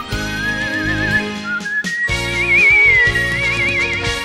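Professional human whistling carrying a slow song melody over an instrumental backing track. The whistled line holds notes with wide vibrato and steps up to a higher phrase about two seconds in.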